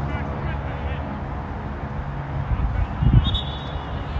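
Open-air field ambience: a steady low rumble with faint distant shouts from players. A single thump about three seconds in is the loudest moment.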